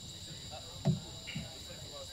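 Crickets trilling steadily, with a short low sound about a second in; no music plays.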